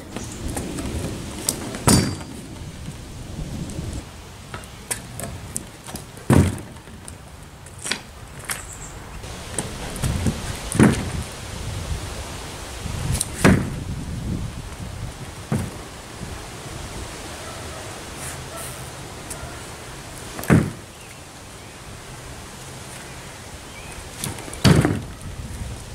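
Stunt scooter rolling on and landing tricks on a plywood board: a run of separate thuds every few seconds, with a low rumble between them.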